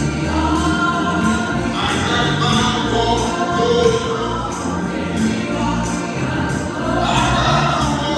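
Gospel song sung by two women's voices over instrumental accompaniment with a deep bass, with jingling percussion keeping a steady beat.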